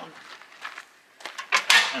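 Black and Decker Workmate portable workbench being folded up, its metal frame clicking and clattering as the top swings down and the legs fold in. There are a few light clicks at first, then a loud rattle of metal near the end.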